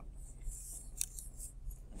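A faint high hissing rustle, then a sharp click about a second in and a few fainter clicks, over a steady low room hum.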